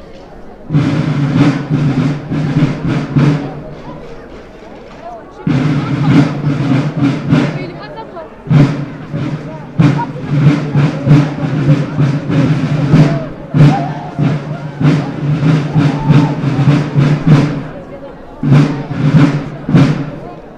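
Snare drums played together in five loud passages of rapid strokes and rolls, each a few seconds long, broken by short pauses in which the crowd is heard.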